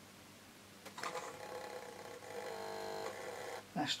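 Nernst lamp's switching relay buzzing as the glower begins to conduct, then cutting out suddenly as it switches the heater off. The buzz starts about a second in and lasts about two and a half seconds.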